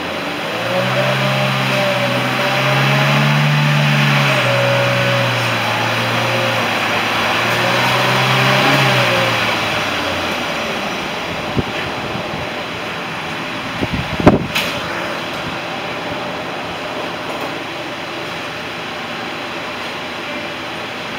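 2014 Chevrolet Cruze's 1.4-litre turbocharged four-cylinder engine running and revved up and back down twice, then settling. Two sharp knocks follow a few seconds apart, the second the loudest sound here.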